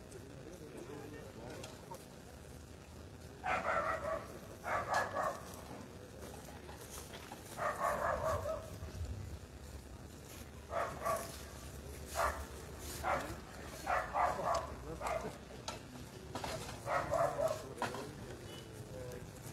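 An animal barking in short bursts, a few at a time with gaps of a second or two, starting about three seconds in, over a low background rumble.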